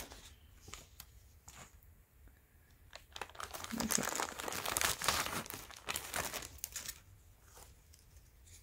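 A thin clear plastic bag and paper sheets crinkling and rustling as they are handled. The sound is light at first and grows to dense crinkling from about three seconds in, easing off about a second before the end.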